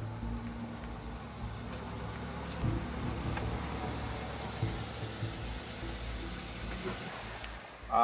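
Car engine running low and steady as a car rolls slowly past at low speed.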